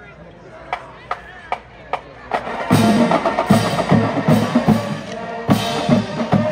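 Marching band starting up: four sharp, evenly spaced stick clicks count it off. About two and a half seconds in, the full band comes in loud, with heavy drum hits under brass.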